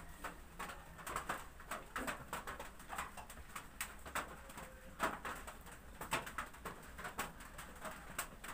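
A comb and a hair sponge working through short hair, making soft, irregular scratching and rustling over a faint low hum.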